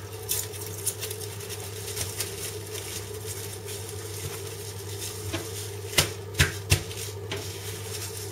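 Plastic cling film crinkling and rustling as hands wrap and fold it tightly around a fish fillet, with a few sharp clicks about six to seven seconds in, over a steady low hum.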